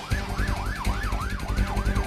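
A yelp-style siren, its pitch sweeping up and down about three times a second and fading near the end, over music with a steady drum beat.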